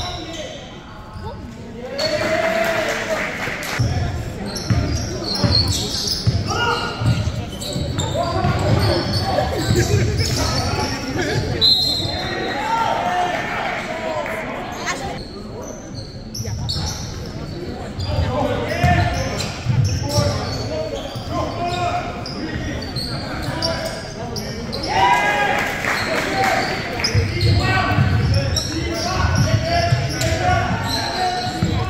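Youth basketball game in a large gym: the ball dribbling and bouncing on the hardwood court in short repeated thuds, with players and spectators calling out, echoing in the hall.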